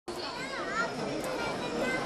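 Many children's voices chattering and calling out at once, some high calls rising and falling over the babble.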